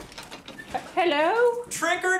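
A wooden front door being unlatched and swung open, then, about a second in, voices calling out a drawn-out sing-song 'trick or treat'.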